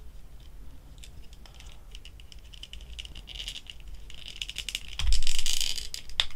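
A plastic action figure's head being twisted and pulled off its neck joint by hand: small clicks and scrapes of plastic on plastic, growing busier, with a louder rasping rub about five seconds in.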